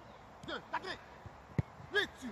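Soccer ball struck: a single sharp thump about one and a half seconds in, then a second knock near the end as the ball is caught.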